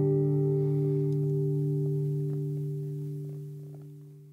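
Final chord on an acoustic guitar ringing out and slowly fading away, with a few faint finger and string noises as it dies.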